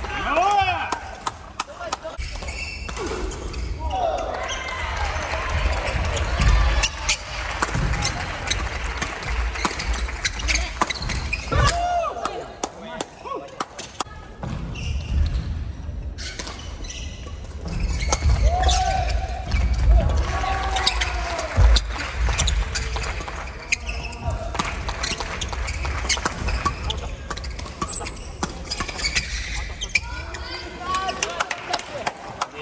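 Badminton doubles rallies in a sports hall: rackets striking the shuttlecock in sharp cracks, shoes squeaking and feet thudding on the wooden court, with players' shouts and voices echoing around the hall.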